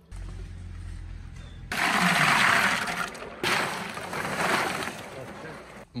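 Ice cubes tipped from a sack into a tub of water, in two pours with splashing: the louder one about two seconds in, the second starting near the middle and fading away.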